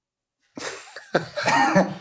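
A man laughing, starting about half a second in: a breathy, coughing outburst that turns into voiced laughter.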